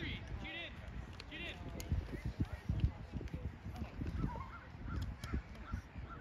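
Distant, indistinct high-pitched shouts and voices of children and spectators around a youth soccer field, with low rumbling bumps on the microphone.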